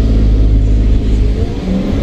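Truck's diesel engine revving as the truck pulls away from a standstill, a deep rumble heard from the cab that eases briefly about a second and a half in.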